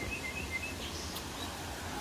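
Small birds chirping in park trees: a few short high chirps in the first second and a brief higher call near the middle, over a low steady rumble.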